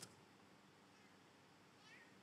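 Near silence: room tone, with a faint, brief high-pitched sound just before the end.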